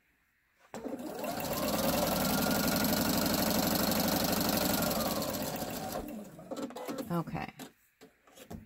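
Computerized sewing machine stitching a seam through fabric. It starts about a second in, speeds up to a steady fast run, then slows and stops about two seconds before the end. A few light clicks follow.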